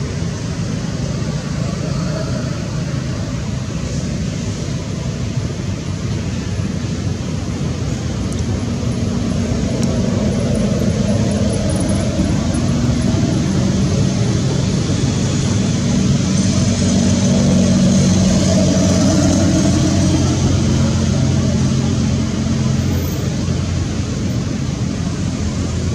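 Steady low engine rumble with a wash of noise, like motor traffic, growing louder through the middle and easing near the end.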